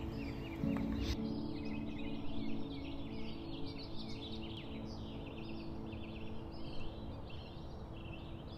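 Small birds chirping and twittering in quick, repeated short calls, over soft background music holding sustained chords.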